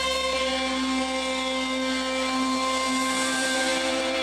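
Live rock band's amplified electric guitar and keyboard sustaining a held chord that rings on steadily, without new strums.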